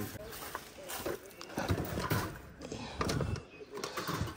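Irregular footsteps and short knocks of wire pet cages being carried and set down in a car's boot.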